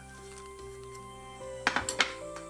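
Gentle background music with long held notes, and near the end a quick cluster of clinks of kitchenware.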